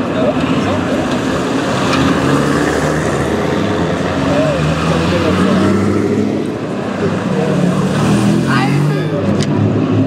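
Vintage cars' engines running at low speed as they drive past one after another, their note rising and falling. The engine sound dips a little past halfway, then builds again as the next car approaches near the end. Spectators' voices mix with the engines.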